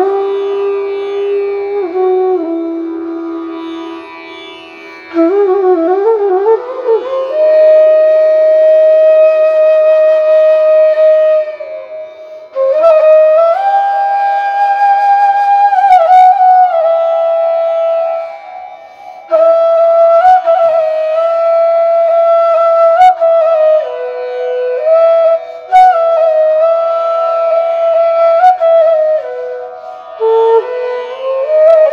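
Bansuri (Indian bamboo flute) played solo. It carries a slow melody of long held notes joined by slides and quick wavering ornaments, with short breaks for breath.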